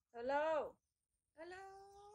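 A woman's voice in two drawn-out, sing-song utterances: a call that rises and falls, then a held "oh" starting about a second and a half in.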